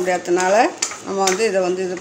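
A woman talking in Tamil while a metal ladle stirs in a small steel pan and clinks against its sides, with a sharp clink a little under a second in.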